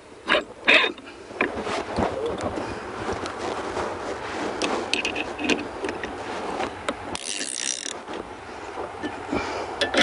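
Scattered metal clicks and scraping as the bolts of a water-ski boom clamp on the ski pylon are tightened by hand, over a steady background hiss, with a brief rustle about seven seconds in.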